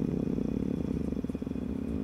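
A man's long, drawn-out hesitation sound "euh" that sinks into a low, creaky, rattling voice, held without a break and cut off at the very end.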